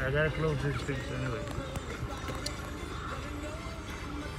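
Quiet, indistinct talking with music playing underneath.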